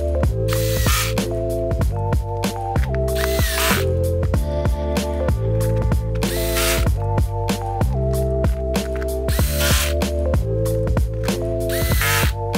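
Electric screwdriver driving the laptop's bottom cover screws in five short whirring bursts, about one every three seconds, over background music with a steady beat.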